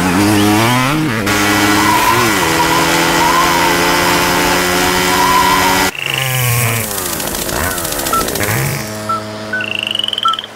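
A cartoon bee's flight buzz, voiced as a small motorbike-like engine: a few revs, then a steady buzzing drone that cuts off abruptly about six seconds in. After the cut come softer sounds with a few short high chirps.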